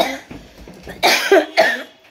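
A person coughing: a few short, loud coughs, one at the start and two close together in the second half.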